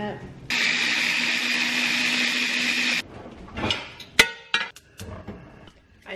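Electric blender runs for about two and a half seconds, blending oat-and-egg-white pancake batter, with a steady hum under its whirr; it starts and stops abruptly. A few knocks and one sharp click follow as the container is handled.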